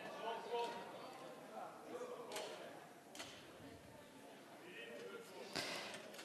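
Faint murmur of many voices in a large assembly chamber, with a few soft clicks.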